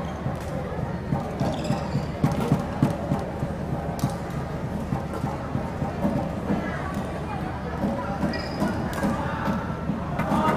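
Badminton singles rally: sharp racket hits on the shuttlecock, a few at irregular intervals, and short squeaks of players' shoes on the court, over a steady murmur of the arena crowd.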